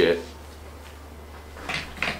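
A T-shirt being shaken out and lifted up: a brief rustle and flap of fabric near the end, over a steady low room hum.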